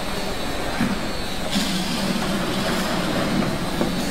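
Automatic double-side bottle labeling machine running: steady motor and conveyor noise with a low hum and a few faint clicks.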